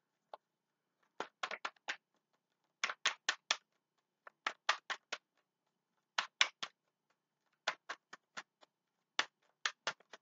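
A deck of tarot cards shuffled overhand by hand: short runs of three to five quick card slaps, repeating about every second and a half.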